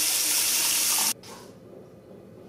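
Bathroom tap running, its stream splashing onto a toothbrush held beneath it. The rush of water cuts off suddenly about a second in.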